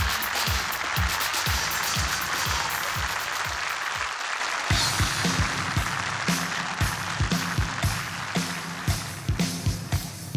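Live rock band starting a song: a steady kick drum about two beats a second under audience applause, then the bass, electric guitar and full drum kit come in about five seconds in.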